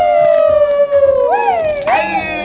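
A long held, voice-like note sliding slowly down in pitch, then swooping up twice in quick succession near the end.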